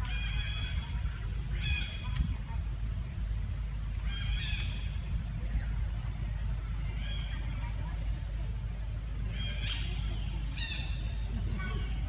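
Young long-tailed macaque giving short, high-pitched cries in little clusters every two to three seconds, over a steady low rumble.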